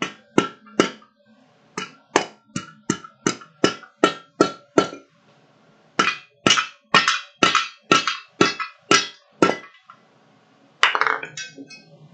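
Blacksmith's hand hammer striking hot steel on an anvil in quick runs of blows, about three a second, with the anvil ringing. There are three blows, then a run of about nine, a short pause, and a run of about ten. Near the end comes a brief metallic clatter.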